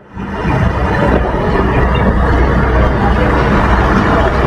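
Steady low rumble under a dense, even background noise.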